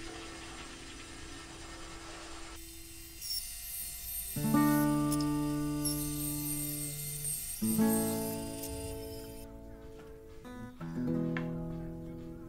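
Acoustic guitar music: slow plucked chords about every three seconds, each left to ring and fade, with a steady high hiss under the middle stretch.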